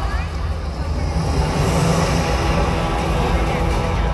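Show soundtrack played loud over outdoor speakers: dramatic music and sound effects with a heavy, deep rumble.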